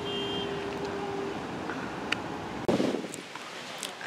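Steady low rumble of background noise inside a car cabin, with a faint hum in the first second. About two-thirds through it changes abruptly to a quieter, thinner outdoor background.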